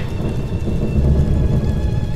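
A deep, steady rumble with a faint hiss above it, like thunder, from a dramatic soundtrack's sound effects.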